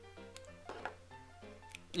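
Quiet background music: a melody of soft, separate notes stepping up and down.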